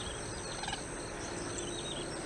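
Open-field ambience: small birds chirping over and over in the background, over a steady high-pitched whine. A brief short call stands out about two-thirds of a second in.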